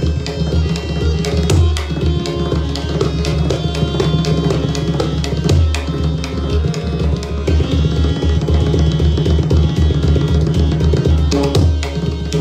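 Pakhwaj and tabla drumming in a jugalbandi, a dense stream of quick strokes over deep bass strokes, with a harmonium holding a repeating melody underneath.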